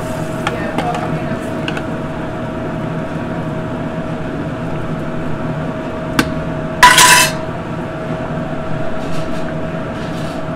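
Metal ladle stirring a large aluminium stockpot of braising liquid, knocking lightly against the pot, with a loud brief clatter of metal on metal about seven seconds in. A steady hum runs underneath.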